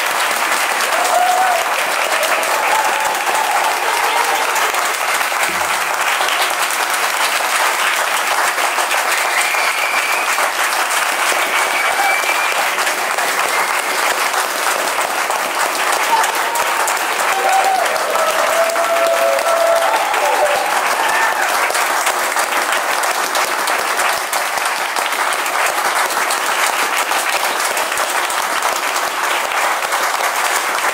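Audience applauding steadily in a small room, dense clapping throughout, with a few voices calling out over it.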